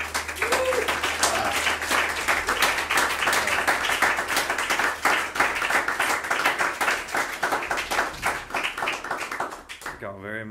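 Audience clapping, a steady patter of many hands that tails off near the end.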